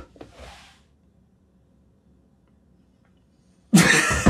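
Near silence, just room tone, for most of the time after a short soft breathy sound at the start; a man bursts out laughing near the end.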